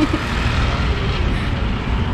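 Steady road traffic noise from a city street: a continuous low rumble of passing vehicles.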